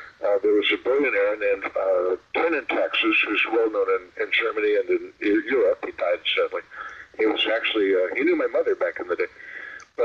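Speech only: continuous conversational talking with brief pauses.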